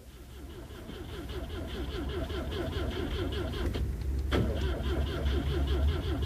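Old car engine running, fading in over the first two seconds and then holding steady with a rhythmic pulse. There is one sharp click about four and a half seconds in.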